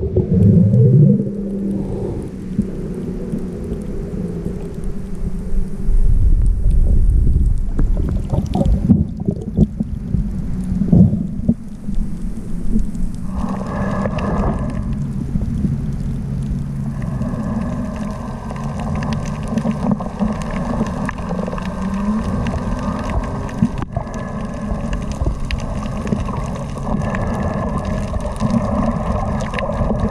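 Muffled underwater sound from a camera held below the surface: a continuous low rumble of moving water, with a steady droning hum carrying through that grows stronger about halfway in.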